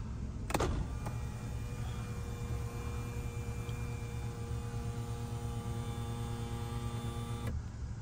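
Power panoramic roof of a 2020 Toyota Camry XSE opening: a click about half a second in, then the roof motor's steady whine, which stops shortly before the end.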